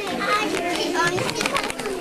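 Young children chattering and calling out over one another, several high voices at once.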